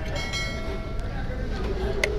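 Steady low rumble of traffic, with a high, level tone held for about the first second and a half, and a light click of a metal spoon or fork on the plate about a second in.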